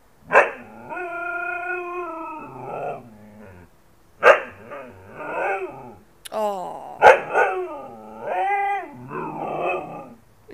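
Siberian husky 'talking': a string of howl-like calls that rise and fall in pitch. The first is held steady for about a second and a half, and several start with a sharp yelp.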